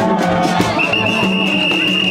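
Gagá street-procession music: drums and shaken percussion keep a steady beat. A long, high, steady whistle note comes in about a second in and holds.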